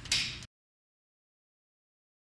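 A brief hiss-like burst in the first half second, fading, then the sound track cuts off to dead digital silence.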